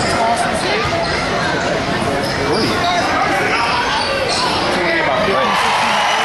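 A basketball dribbled on a hardwood gym floor, under steady chatter from a crowd of spectators.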